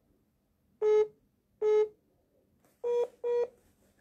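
Four short electronic telephone beeps, each about a quarter second long: two spaced apart, then two close together near the end. They come over a phone line as a call comes through.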